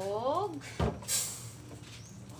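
Plastic bottle of cooking oil set down on a kitchen counter: one solid knock a little under a second in, followed by a short high hiss.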